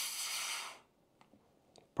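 Air hissing into a PrintDry vacuum filament container as its lid's release valve is pressed, letting the vacuum out. The hiss cuts off under a second in, followed by a couple of faint clicks.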